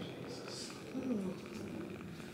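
A person groaning: a low voice that dips and rises, after a short breathy hiss.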